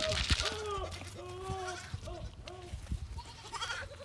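Young goats giving a string of short, soft bleats while they feed on grain from a hand-held cup.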